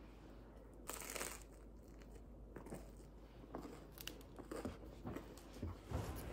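Biting into a piece of buttered crusty baguette, with a loud crunch of the crust about a second in, then crackly chewing of the crust in short bursts.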